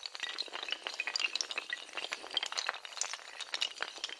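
Sound effect of a long chain of dominoes toppling: a dense, rapid, irregular clatter of small hard clicks.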